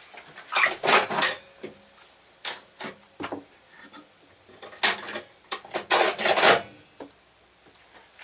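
A dog sniffing in short noisy bursts, mixed with clinks of a metal hand-crank apple peeler-corer being handled.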